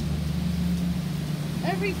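Steady low rumble of cyclone-force wind, with a voice speaking briefly near the end.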